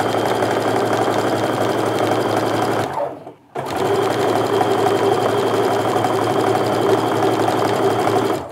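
Baby Lock domestic sewing machine running at a steady speed, stitching a quarter-inch seam through two cotton quilt strips. It stops briefly about three seconds in, then runs on at the same speed.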